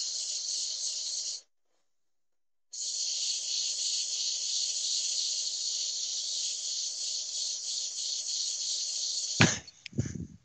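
Abrasive paper hissing steadily against the inside of a wooden cup spinning on a lathe as it is hand-sanded. The hiss breaks off for about a second near the start, then carries on, and ends with a short knock near the end.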